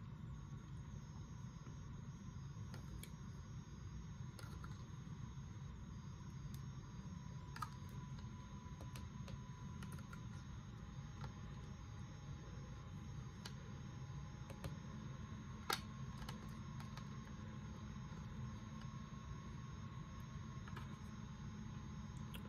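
Light clicks and scrapes of a plastic spoon scraping pineapple fruit out of a small plastic cup, sparse and faint, with two slightly sharper clicks about a third and two-thirds of the way through, over a steady low room hum.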